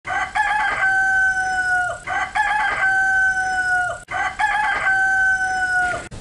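A rooster crowing three times at an even pace, about two seconds apart. Each crow has a short broken start and a long held note that drops off at the end.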